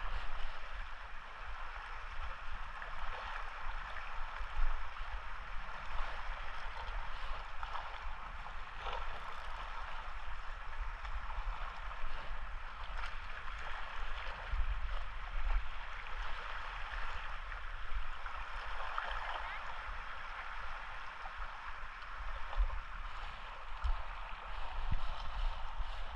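Small waves lapping and splashing against shoreline rocks in a steady wash, with wind rumbling on the microphone.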